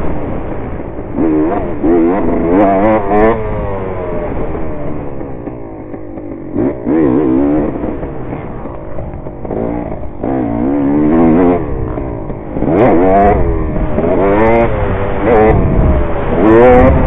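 Dirt bike engine, heard from on the bike, revving hard and backing off over and over, its pitch climbing and dropping every second or two as the rider accelerates out of corners and shifts.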